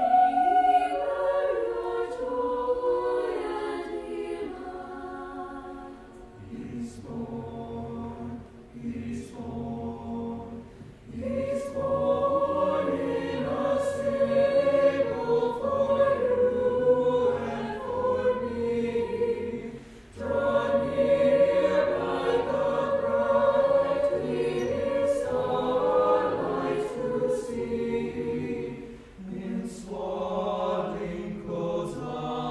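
Mixed choir of men's and women's voices singing a slow piece in long held phrases, with brief breaks between phrases a few times.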